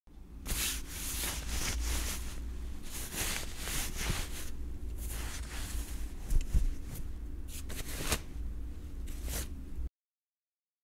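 Close-miked ASMR sound effect for a treatment on skin: irregular bursts of rustly, crackly noise with a few sharp clicks over a steady low hum. It cuts off abruptly just before the end.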